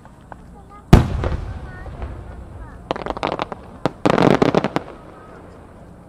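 An 8-gou (about 24 cm) aerial firework shell bursts with one sharp, loud bang about a second in, echoing away. It is followed by two bouts of rapid crackling, near the middle and shortly after.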